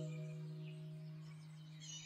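Relaxing background music fading out on a held low note, with faint high bird chirps near the end.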